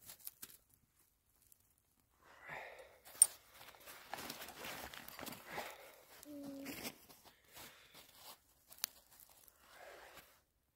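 Breath blown into a small, just-lit fire of fatwood, birch bark and dry twigs to feed the flames: several blows, the longest lasting about three seconds in the middle, with a few sharp snaps and crackles of the twigs.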